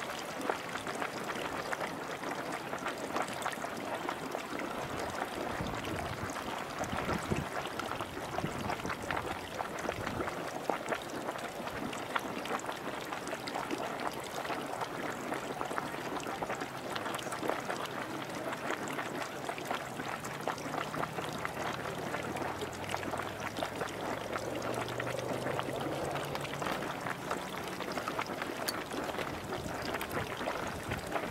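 Marmot Cave Geyser's hot-spring pool splashing and gurgling steadily as its water roils and then drops down into the vent, the low-roiling and draining stage of the geyser's cycle.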